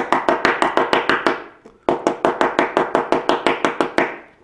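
Brass hair stacker tapped down repeatedly, in two runs of quick taps about six a second with a short break a little under halfway, each tap ringing briefly. The deer hair inside is being stacked to even its tips.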